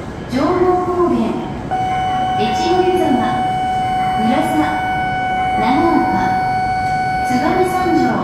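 Electronic sounds from a station platform's public-address system. A pitched figure rises and falls about every second and a half, and about two seconds in a steady electronic tone starts and holds until near the end.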